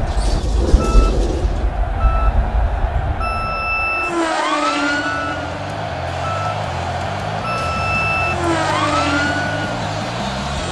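Race-start countdown beeps: two short beeps about a second apart, then a long beep, followed by sweeping rising-and-falling tones. The countdown comes round again, a short beep and then a long one, over a steady low rumble.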